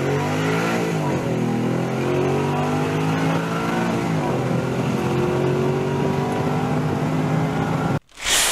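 Truck engine sound effect running and revving, its pitch rising and falling a few times. It cuts off suddenly at the end.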